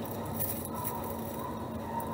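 Faint rustling of plastic grafting tape being wound by hand around a grafted avocado seedling's trunk, over steady background noise.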